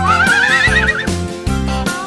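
A horse whinnies once, a call about a second long that rises and then quavers, over bouncy children's music with a steady beat.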